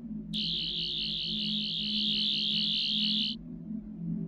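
A high, wavering electronic tone, a sci-fi sound effect, starts suddenly just after the start and cuts off abruptly about three seconds later, over a low, steady musical drone.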